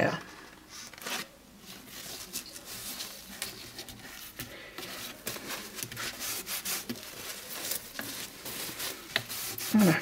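Paper being rubbed flat with a cloth to press it down onto a scrapbook album cover board: an irregular series of scratchy rubbing strokes.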